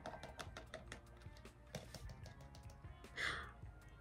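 Light crinkling of a plastic sachet and small ticks of bleaching powder being poured into a plastic jar, with a short louder rustle about three seconds in, over quiet background music.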